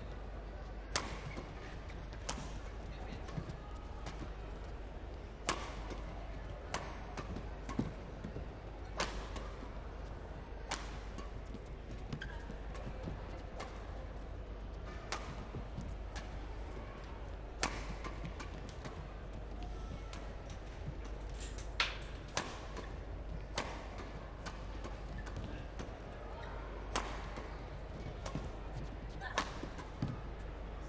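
Long women's doubles badminton rally: rackets striking a feathered shuttlecock, a sharp crack about every one to one and a half seconds, over a steady arena hum.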